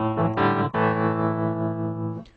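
Korg SV-1 stage piano playing its Reed EP 1 reed-type electric piano sound through the built-in amp model with a Black 2x10 cabinet simulation. A few short chords, then one chord held that fades away near the end.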